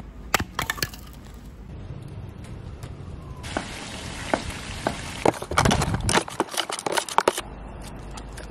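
A few sharp cracks of firewood being split on a chopping block, then food frying in a pan with a steady sizzle and a wooden spoon clicking against it, and a dense run of sharp cracks and clicks near the end.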